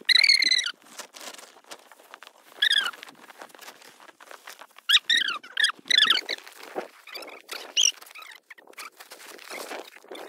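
Tarpaulin rustling and rope being handled as a cover is tied down over a motorcycle. Several short, high-pitched squeaks cut through: the loudest comes right at the start, and a cluster of sliding squeaks falls about five to six seconds in.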